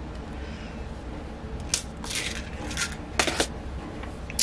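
A few sharp plastic clicks over soft handling rustle, beginning about two seconds in, with a close double click near the end: safety-eye backs being pressed down onto their stems inside a crocheted amigurumi head.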